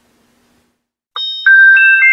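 Near silence, then about a second in a short electronic chime jingle: clear ringing tones at several pitches come in one after another, each with a slight click at its start, and layer over each other.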